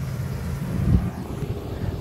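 UPS delivery truck's engine running with a low rumble, with wind buffeting the microphone and one louder low gust about halfway through.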